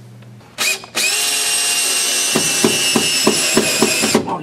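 Cordless drill driving a screw into a wooden stand support: a short burst, then a steady run of about three seconds, with a regular ticking in its second half.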